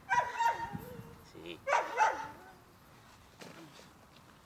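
A dog giving two short bursts of high-pitched vocalising, each falling in pitch, about a second and a half apart.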